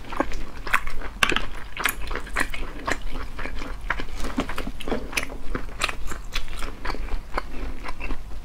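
Close-miked eating of cooked snail meat: wet biting and chewing with many short, sharp clicks, several a second.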